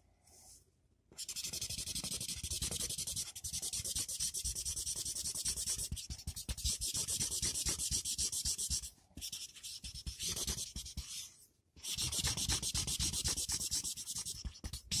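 Yellow felt-tip marker scrubbed rapidly back and forth over paper, a dense scratchy rubbing of quick strokes. It starts about a second in and stops briefly twice in the second half.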